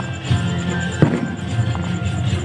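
Music playing with a single sharp firecracker bang about a second in.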